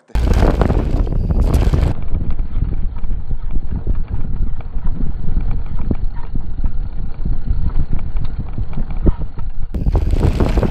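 Mountain bike riding down a rough trail, heard from a camera mounted low on the front suspension fork: wind rumbling hard on the microphone, with a constant run of knocks and rattles as the front wheel hits rocks and roots. The sound changes abruptly about two seconds in and again near the end.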